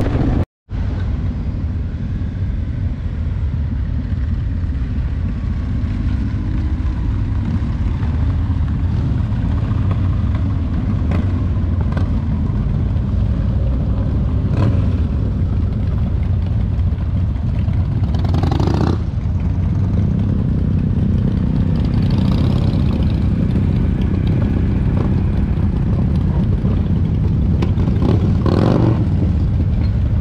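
Motorcycle engines running with a steady low rumble as bikes ride by. The sound cuts out for a moment about half a second in, and there are a couple of brief louder rushes later on.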